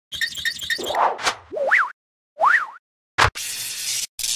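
Animated logo intro sound effects: a quick run of ticks at about four a second, two springy pitch glides that rise and fall, then a short deep thud followed by a hissing whoosh.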